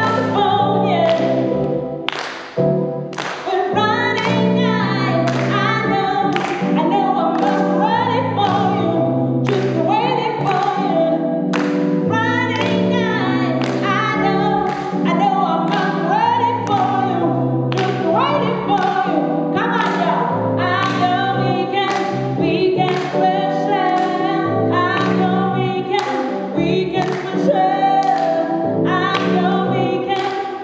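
A woman singing live into a microphone over keyboard chords and a steady beat, heard through a PA in a large room.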